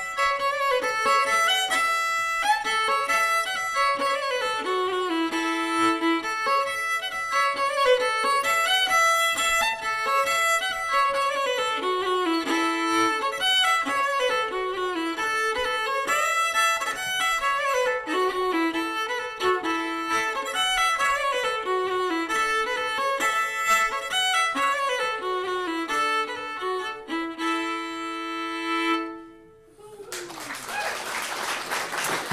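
Solo Irish fiddle playing a Sliabh Luachra (Kerry) polka, a quick run of bowed notes that closes on a long held note and stops about a second before the end.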